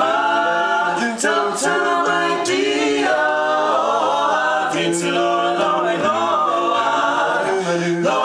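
Barbershop quartet singing a cappella in close four-part harmony, a woman singing lead over three men's voices. They hold sustained chords that move together from note to note, with a few sharp sung consonants.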